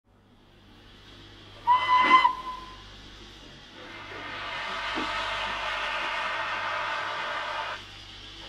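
Archive recording of a steam locomotive: one short, single-note whistle about two seconds in, then a steady hiss of escaping steam that lasts about four seconds and stops abruptly near the end.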